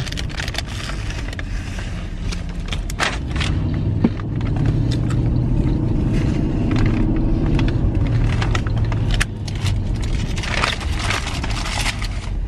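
Steady car-cabin rumble from the engine and road, swelling somewhat in the middle, with the crinkle of a paper food wrapper and the crunch of bites into a crispy hash brown.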